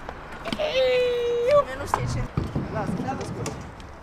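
A person's long, drawn-out shout at one steady pitch lasting about a second, followed by voices mixed with sharp clacks from a freestyle scooter on a concrete ramp.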